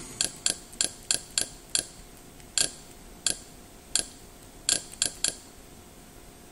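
Menu navigation clicks, one per step of the cursor: six quick clicks about three a second, then three spaced well apart, then three more in quick succession near the end.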